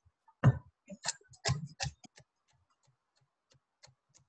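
Chef's knife chopping kale and collard stalks on a cutting board: four sharper strikes in the first two seconds, then a run of lighter, quicker taps.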